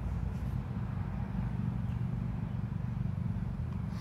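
A steady low rumble of outdoor background noise, even in level with no distinct events.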